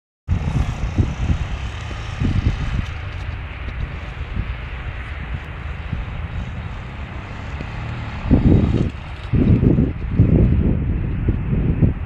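A small motorcycle riding across a grass field, its engine heard from a distance, under wind buffeting the microphone. The low gusts come strongest a little past the middle.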